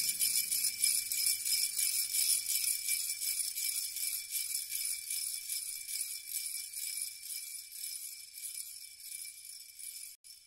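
Music: shaken metal jingles with high ringing tones, fading out slowly at the close of a piece; a low held note under them dies away a couple of seconds in.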